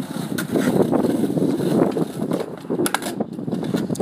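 Skateboard wheels rolling over concrete with a steady rough rumble, and a few sharp clacks of the board.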